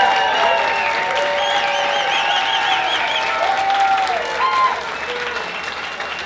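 Audience in a tent applauding, with voices calling out over the clapping. The applause dies down near the end.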